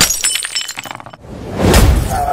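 Glass-shattering sound effect: a sudden crash with shards tinkling and crackling away over about a second, then a deep swelling rush of sound near the end.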